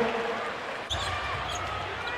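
Basketball arena game sound: a steady crowd hubbub with a basketball being dribbled on the hardwood court. The sound changes abruptly just before a second in, and faint thin squeaks follow.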